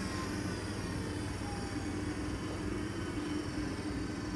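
Two Nice Robus sliding-gate motors running together off the remote, a steady mechanical hum. Both run at once because they are set up as master and slave.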